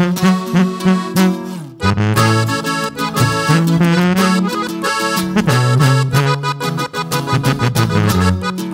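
Instrumental break of a live norteño corrido: a Hohner button accordion plays the melody over a sousaphone bass line and a strummed acoustic guitar, with a brief drop-out about two seconds in before the band picks up again.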